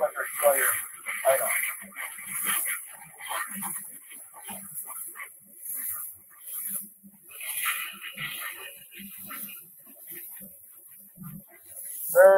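Sandblasting nozzle hissing in a blast cabinet as fine silicon carbide grit at 40–50 psi strips the thick coating off a ceramic flower pot. The hiss swells and fades over and over, and a man's voice murmurs faintly at times.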